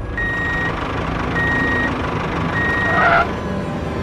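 Vehicle reversing alarm beeping three times, one steady high beep about every 1.2 seconds, over the steady noise of a running engine.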